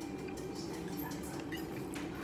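Small, scattered clicks and taps of chopsticks handling gyoza and touching a sauce dish, over a steady low room hum.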